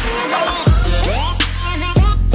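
Background music for the intro: a hip-hop/electronic-style track with a heavy beat and deep bass notes that fall in pitch, under a gliding melody.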